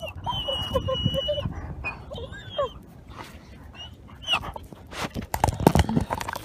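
Young gray wolf whining right at the microphone: one high held whine about a second long near the start, then a shorter wavering one, over close breathing and handling rumble. Near the end come a few sharp clicks as its teeth knock against the camera.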